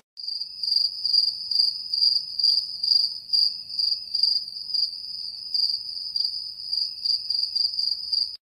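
Crickets chirping: a steady high-pitched trill that pulses two or three times a second.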